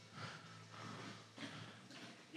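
Faint breaths, a couple of short nasal exhales, over a quiet background.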